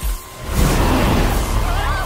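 Film-trailer soundtrack: a brief low hit at the start, then loud, dense music and sound effects swelling in about half a second later.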